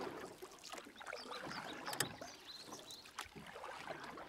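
Lakeside ambience: water lapping and splashing irregularly, with small birds chirping in short high notes throughout.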